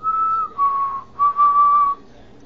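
A woman whistling three plain notes through pursed lips. The first note is a little higher than the other two, and there is a short break before the last and longest note.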